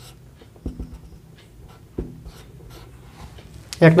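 Marker writing on a whiteboard: faint short strokes of the tip across the board, with two soft knocks about two-thirds of a second and two seconds in.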